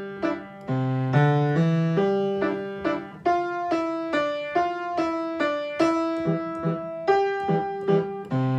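Upright piano played with both hands: a simple beginner piece, left-hand notes held under a right-hand melody, at a steady pace of about two notes a second.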